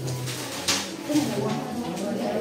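Indistinct background talk of several people speaking quietly, with no clear words.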